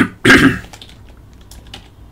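A cough near the start, the loudest sound, followed by light clicks of typing on a computer keyboard.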